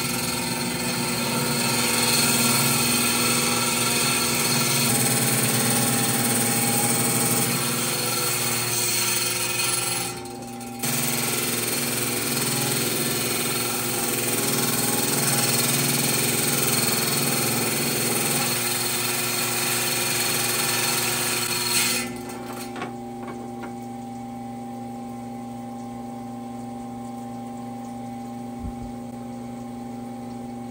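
A small wet saw's diamond blade cuts through a fossilized shark coprolite: a harsh grinding over the motor's steady hum, easing off briefly about a third of the way in. A little past two-thirds through the grinding stops and only the quieter hum of the spinning blade goes on.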